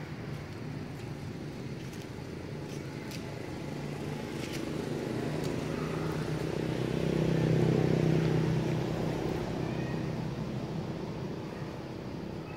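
A motor vehicle's engine hum that swells as it passes, loudest about seven to eight seconds in, then fades away. A few faint clicks come a few seconds in.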